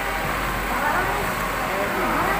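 A crowd of people talking at once, many voices overlapping into a steady din with no single speaker standing out.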